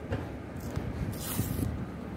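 A paper price tag pulled off a cordless drill's plastic body and crumpled in the hand: low handling sounds, then a short paper rustle a little past the middle.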